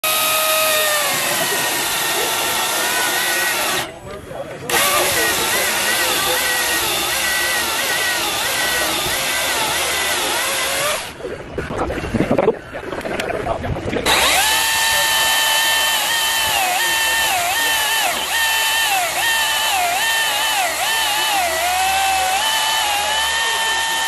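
Cordless Milwaukee chainsaws cutting through logs: a high electric motor whine with chain noise. The pitch dips again and again as the chain bites into the wood and the motor slows under load. The cutting is broken by a short gap about four seconds in and by a rougher, uneven stretch from about eleven to fourteen seconds.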